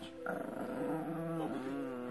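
A small dog play-growling: one long, pitched growl that starts a moment in and wavers slightly in pitch.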